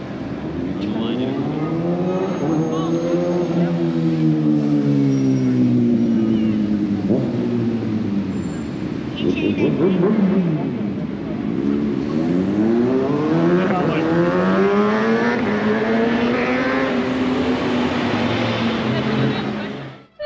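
A car engine in street traffic, its note rising and falling in two long swells of several seconds each as it accelerates and eases off, the second swell coming about halfway through.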